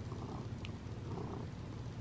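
Domestic cat purring steadily.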